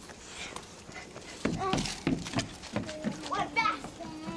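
Young children's voices squealing and calling out in play. Near the end comes a rising shriek and a held, steady squeal.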